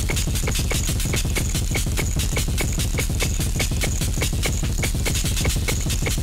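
Live hybrid drum kit with electronics playing electronic, techno-like music: a fast, even pulse of sharp hits over a steady deep bass.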